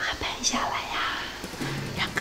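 A woman whispering excitedly, with soft background music.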